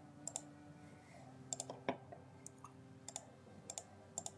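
Computer mouse clicking: several short, sharp clicks, some in quick pairs, over a faint steady hum.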